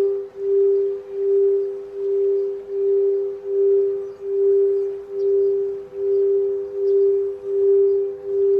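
Crystal singing bowl ringing with one steady, sustained tone. Its loudness swells and fades in a regular pulse, a little more than once a second.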